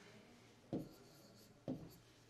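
A stylus writing on an interactive whiteboard screen, with two taps of the pen tip about a second apart.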